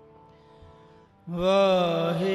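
Sikh shabad kirtan. Soft held harmonium notes sound first. About a second in, a man's voice enters loudly, singing a long note that glides and wavers in pitch over the steady harmonium drone.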